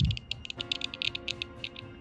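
Ceramic scissors snipping through the thin metal lead tabs between an iPhone battery's cell and its BMS board: a quick, irregular run of small crisp clicks after a soft knock at the start. Faint background music comes in about half a second in.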